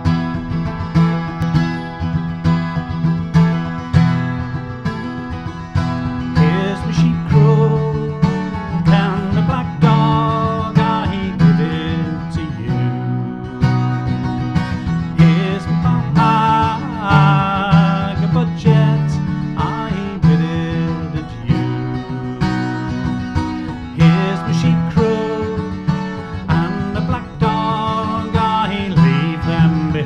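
Acoustic guitar playing a traditional English folk tune, joined by a man's singing voice from about six seconds in.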